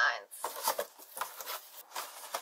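Cardboard moving-box flaps being folded open and the packed contents handled: faint, scattered rustling with a few light taps.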